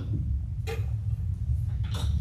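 Steady low room hum, with two brief faint rustles, one a little over half a second in and one near the end.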